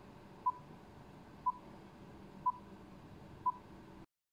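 Film-leader countdown beeps: four short, single-pitched beeps evenly spaced about one second apart, one for each number counting down, over a faint steady hiss.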